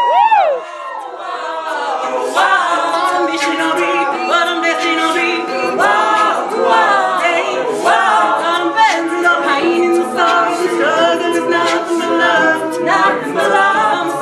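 Mixed-voice a cappella group singing sustained backing chords over a steady beat from a vocal percussionist. Right at the start the voices sweep up and down in glides, then drop off briefly before the chords and beat come back in.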